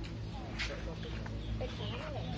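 Outdoor background of distant voices and short clucking, bird-like calls over a steady low hum.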